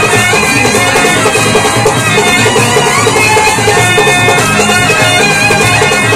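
Live folk band playing a kolatam dance tune: a held, wavering melody line over drums keeping a steady, even beat.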